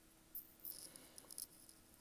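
Near silence broken by a few faint taps and rustles as a cardboard powdered-milk box is handled and set down on a stone countertop.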